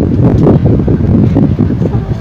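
Wind buffeting the phone's microphone: a loud, gusting rumble.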